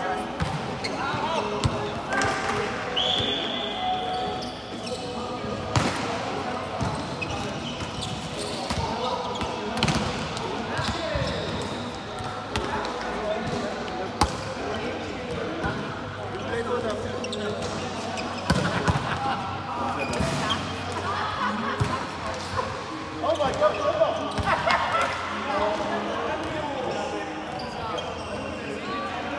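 Indoor volleyball being played in a large hall: sharp smacks of the ball being struck, coming every few seconds through the rally, over players' indistinct calls and chatter echoing in the hall.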